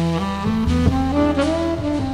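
Tenor saxophone playing a jazz ballad melody, moving through several held and short notes, over a backing-track rhythm section with a walking bass.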